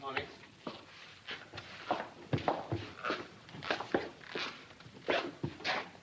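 Bread dough being kneaded by hand on a wooden table: a series of soft slaps and thuds as the dough is pushed, folded and dropped, about two a second at an uneven pace.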